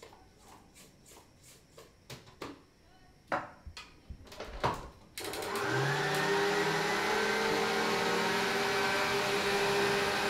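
A few light clicks and knocks, then about five seconds in a stand mixer's motor switches on and runs steadily, a low hum rising in pitch for a moment as it comes up to speed. It is beating butter, sugar and eggs together for lemon curd.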